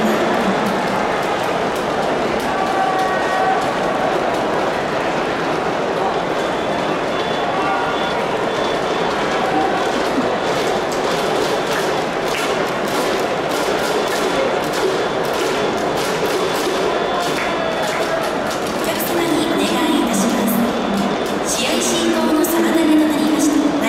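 Baseball stadium crowd noise: a steady hubbub of many voices with scattered claps and knocks.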